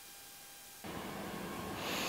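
Quiet room tone that jumps abruptly to a louder hiss about a second in, then a short breath through the nose near the end as a bite of food is brought to the mouth.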